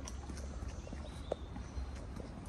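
Footsteps of a person walking along a woodland path: irregular soft steps, one firmer step about a second in, over a low rumble on the microphone.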